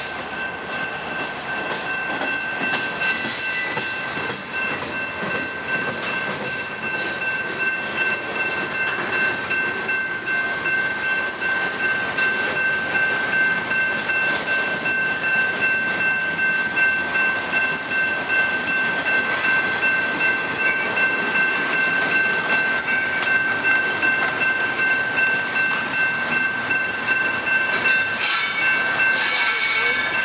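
Double-stack intermodal freight cars rolling past at close range, a continuous rumble and clatter of steel wheels on rail, with a steady high-pitched wheel squeal held throughout.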